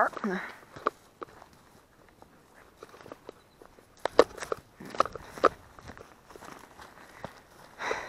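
Footsteps of people walking on rough ground: scattered steps and scuffs, heaviest about four to five and a half seconds in.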